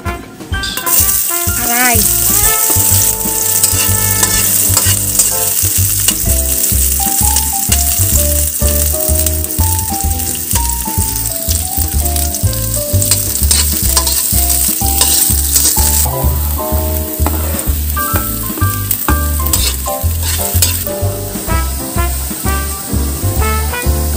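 Chopped red onions frying in hot oil in a wok, sizzling steadily from about a second in, while a fork stirs them and scrapes against the pan.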